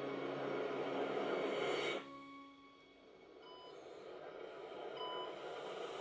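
Sci-fi trailer soundtrack: a loud rushing blast with a low musical drone for the first two seconds, cutting off suddenly. Then a quieter, slowly swelling drone with a short electronic beep twice, about three and a half and five seconds in.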